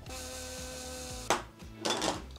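Small electric spice grinder running steadily for a little over a second, milling flax and chia seeds, then cutting off with a sharp click. A short knock follows near the end.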